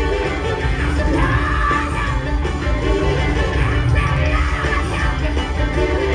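Live soul and rock and roll band playing, with drums and electric guitars under a lead vocal, heard from the audience.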